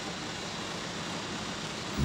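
Steady hiss of candy-factory background noise, even throughout, with no distinct knocks or tones.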